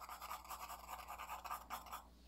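Graphite pencil shading on paper: faint, quick back-and-forth strokes, about five a second, stopping at the end.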